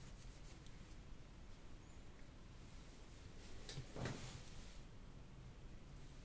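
Near silence: quiet room tone, with one faint, brief rustle about four seconds in.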